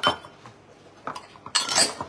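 Drinking glasses clinking and knocking as they are handled on a table: a sharp clink at the start, another about a second in, and a longer clatter near the end.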